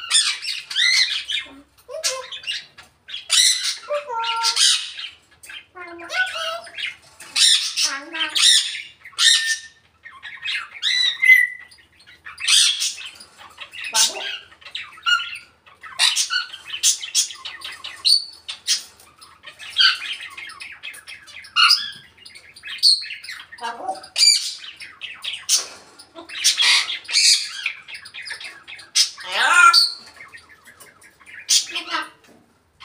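African grey parrot squawking over and over, harsh loud calls with short whistled notes mixed in.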